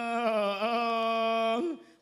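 A man's voice chanting a Khon recitation, drawing out one long held note that dips slightly partway, then slides briefly and fades out near the end.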